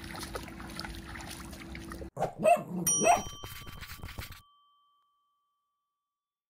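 Faint lapping of a Great Dane drinking from a pool over a low steady hum, then a short end-card sting: two quick cartoon-style dog barks and a bright bell ding that rings out and fades, then silence.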